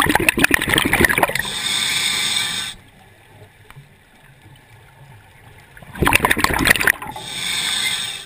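A diver breathing through a scuba regulator right at the microphone, twice: a crackling burst of exhaled bubbles, then a steady hiss of air drawn through the demand valve, with a quiet pause of about three seconds between the two breaths.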